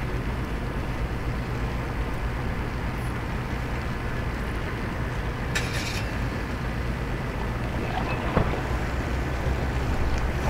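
Steady low engine rumble carrying across harbour water, typical of the ship and its tug moving in. A brief hiss comes about halfway through and a single knock near the end.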